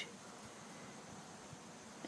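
Faint steady background hiss with no distinct sound, just above near silence.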